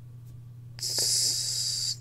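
A person's breath hissing, about a second long and high-pitched, starting just under a second in and stopping abruptly, over a steady low hum.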